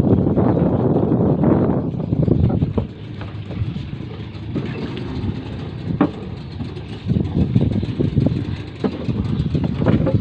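Boat engine running at idle, louder in the first couple of seconds and then lower and steady, with a few sharp knocks.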